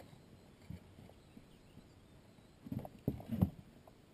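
A few short, hollow knocks on a fishing boat: one about a second in, then a quick cluster of several near the end.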